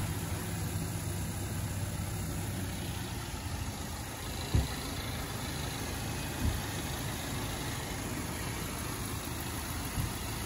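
Subaru Crosstrek's flat-four engine idling steadily, with two dull thumps partway through.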